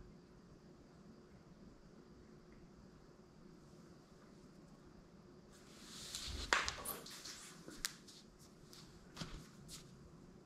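Faint room tone. Then, past the halfway mark, a person shifting and getting up from a tiled floor: rustling and handling noise with one sharp knock and a few lighter clicks.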